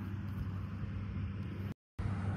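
Steady low engine drone from a distant Case IH Quadtrac tracked tractor working the field, under a haze of outdoor noise. The sound cuts out completely for a moment near the end.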